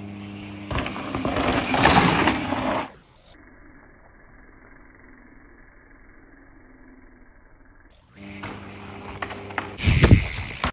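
Mountain bike riding on a dirt trail: a rush of tyre and wind noise that swells to a peak about two seconds in, with a steady low hum beneath it. It then drops to a much quieter stretch, and the rush returns near the end.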